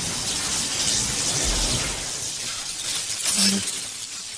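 Electric-spark crackling sound effect of a logo sting, a steady dense crackle and hiss with a brief louder burst about three and a half seconds in.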